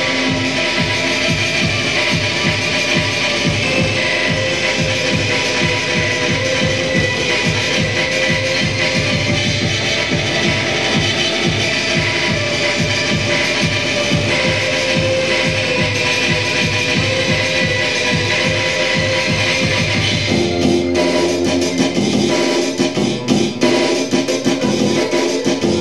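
Loud live band music: a fast, dense drumbeat under sustained electric guitar tones, with no singing; the arrangement shifts about twenty seconds in.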